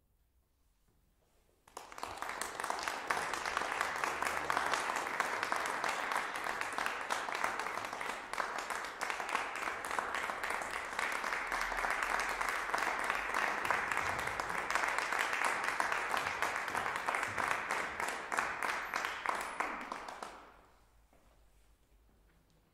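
Audience applauding: it starts abruptly about two seconds in, keeps an even level, then fades out shortly before the end.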